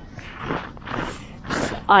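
Winter boots crunching and scraping on snow-dusted river ice: several short gritty steps in a row.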